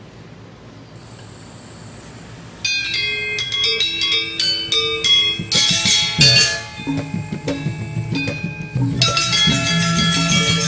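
Balinese gamelan starting a piece: after about two and a half seconds of low background noise, bronze metallophones come in with a line of struck, ringing notes. The fuller ensemble joins about halfway, denser and louder, and grows louder again near the end.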